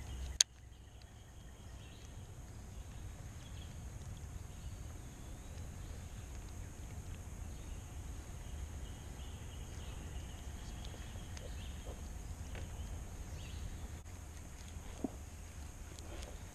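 Quiet outdoor ambience on open water with a steady low rumble. A single sharp click comes about half a second in, and a few faint ticks come near the end.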